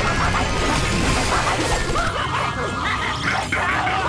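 Cartoon action soundtrack: loud, dense music mixed with crashing and smashing sound effects. Short pitched cries run through it.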